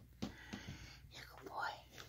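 A cat chewing soft, meaty treat morsels: faint wet clicks and smacks three times in the first second, then a soft whisper-like breathy sound near the end.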